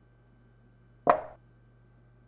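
Chess-move sound effect as a piece is set down on its new square: one short, sharp knock about a second in that dies away quickly.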